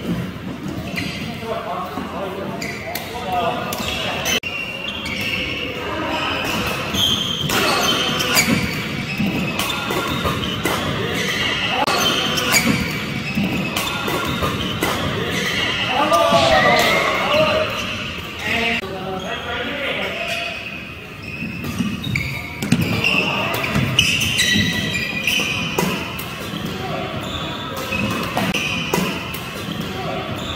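Badminton rackets hitting a shuttlecock in quick succession during a fast doubles exchange, the sharp hits ringing in a large hall, with people's voices in between.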